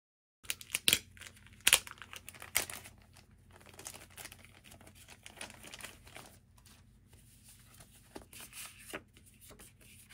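Thin clear plastic bag crinkling and crackling as it is handled and the printed paperwork is pulled out of it. There are a few sharp crackles in the first three seconds, then steady crinkling and rustling.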